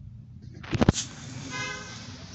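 A quick run of loud, sharp claps a little under a second in, then a short vehicle horn toot about a second and a half in, over a steady outdoor hiss.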